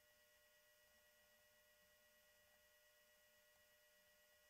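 Near silence, with only a very faint steady hum.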